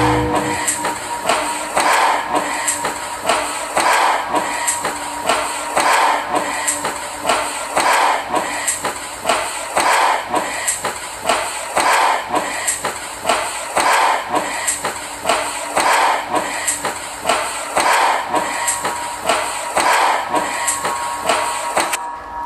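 Live electronic music: a repeating loop of percussive, clattering hits, about two a second, with no bass line or voice over it. The loop breaks off at the very end.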